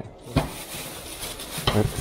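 Rustling of a plastic bag and a stack of postcards being handled on a counter, with two light knocks, one near the start and one near the end.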